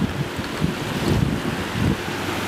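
Wind buffeting the microphone in irregular low gusts, over the wash of small waves lapping at the shoreline.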